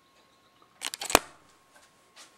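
A quick run of clicks and knocks about a second in, ending in one sharp, loud click, as of something small being handled.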